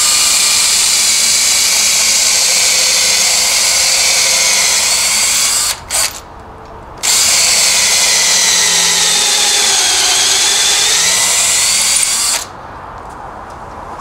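Cordless drill boring a 5 mm hole through a wooden stick with a bit that also cuts a counterbore for a plug: a steady high whine. The drill stops about six seconds in, gives a short blip, then starts again a second later. Its pitch sags under load near ten seconds and recovers before it stops shortly before the end.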